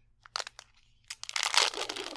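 Leather grip being unwound and peeled off a tennis racket handle, crackling and tearing as its adhesive backing comes away: a few faint crackles at first, then a dense run of crackling from about a second in.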